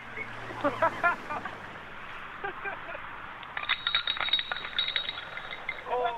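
Muffled, narrow-band sampled scene with a hissy background and short voice fragments, then a quick run of clinking clicks lasting about a second and a half, starting about three and a half seconds in.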